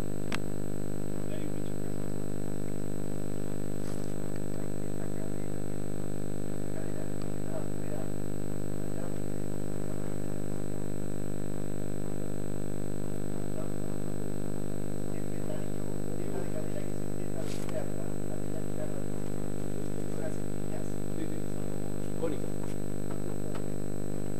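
A steady low drone made of many even overtones that never changes in pitch or level, with a few faint scattered chirps over it.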